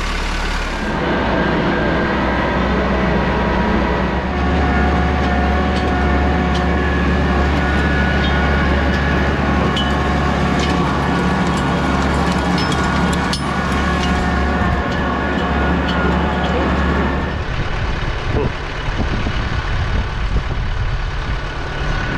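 Kubota compact tractor's diesel engine running steadily under way, with scattered light clicks over it. About seventeen seconds in, the deep engine note drops away, leaving a rougher, uneven noise.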